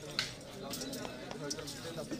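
Many voices chattering in the background, with a single sharp click about a quarter of a second in.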